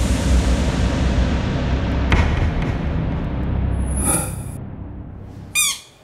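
Edited-in transition sound effect: a loud, noisy hit with a low rumble that fades slowly over about five seconds, then a short pitched sting near the end.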